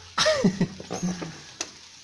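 A voice cries out "no!" in dismay, followed by a fainter vocal sound and a single soft click about one and a half seconds in.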